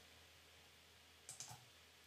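Near silence, broken about one and a half seconds in by a couple of faint computer mouse clicks.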